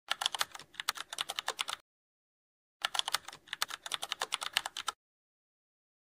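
Computer keyboard typing: two quick runs of keystrokes, each about two seconds long, with a pause of about a second between them.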